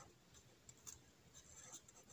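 Faint scratching of a felt-tip marker writing letters, a few soft short strokes.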